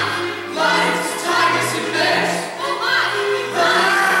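Stage cast singing a musical number together over instrumental accompaniment with sustained bass notes.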